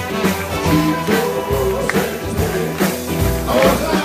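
Live band music with a woman and a man singing into one microphone over a steady drum beat.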